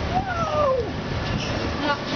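A baby's single high-pitched squeal, rising briefly and then gliding down in pitch, over the steady low hum of a boat's engine.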